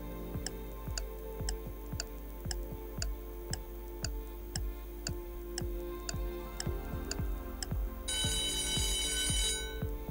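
Quiz countdown timer sound effect ticking about twice a second over a steady background music bed, then a bright alarm-clock ringing for about a second and a half shortly before the end.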